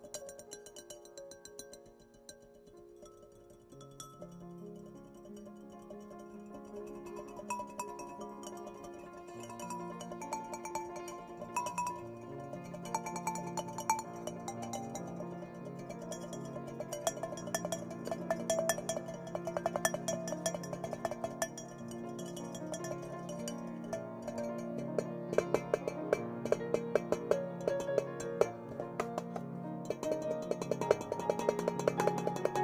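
Solo instrumental music on piano and glockenspiel, starting quietly. Bass notes come in about four seconds in, and the second half grows louder and busier, with quick repeated high struck notes.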